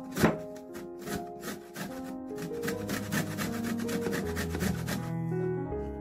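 A whole lemon rubbed in quick, repeated strokes against a metal box grater, rasping off the peel, over background music.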